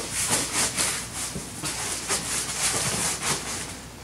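Backpack fabric and straps rustling and rubbing as the pack is handled and packed, an irregular run of soft scrapes and crinkles.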